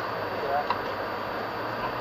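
Steady engine hum and road noise inside a moving car, picked up by a dashboard camera, with a brief bit of voice about half a second in.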